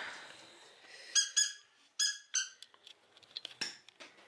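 Four short, high chirping squeaks in two close pairs, each dipping slightly in pitch, followed by a few light clicks and taps.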